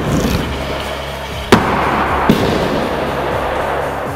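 Background music with a steady beat, over which a stunt scooter lands hard on a wooden skatepark ramp: one loud sharp smack about a second and a half in, a smaller knock just after, then wheels rolling.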